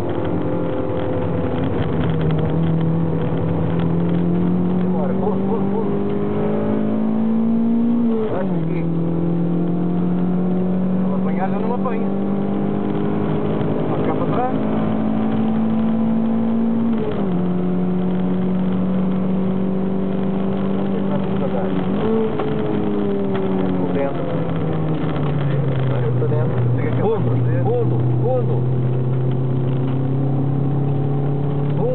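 Toyota MR2 SW20's mid-mounted inline-four engine heard from inside the cabin, running hard under load. Its note climbs slowly for several seconds at a time and drops sharply three times, about a third, halfway and three quarters of the way through.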